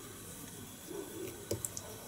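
Faint handling noises from hands working the fly at the tying vise: a soft rustle and a few small clicks about a second and a half in.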